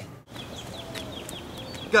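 Faint outdoor ambience with a bird chirping in the background: a quick run of short, falling chirps. A man's shout of "go" comes at the very end.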